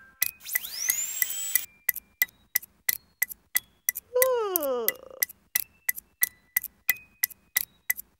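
Knitting needles clicking in an even rhythm, about three clicks a second, set against sound-designed music. Near the start a tone sweeps upward in pitch, and about four seconds in a woman gives a long yawn that falls in pitch.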